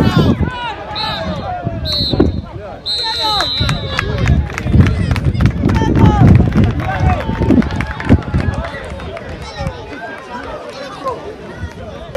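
Players shouting across an outdoor football pitch, with three whistle blasts in the first few seconds, the third one longer.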